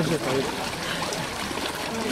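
Water sloshing and trickling as a man lowers himself down a ladder into an ice-cold bathing font. A voice cuts off at the very start.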